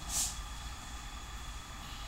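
Steady room background noise: a low hum with a faint high whine running through it, and one short hiss about a quarter second in.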